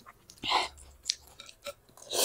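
Close-miked eating sounds of a person chewing a mouthful of pork thukpa noodles: one short wet smack about half a second in, then a few small clicks.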